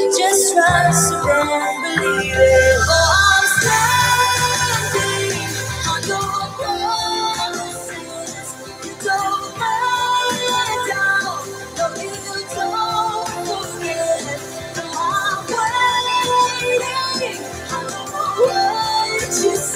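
A recorded contemporary gospel song playing back, with a woman's lead vocal over a full band arrangement.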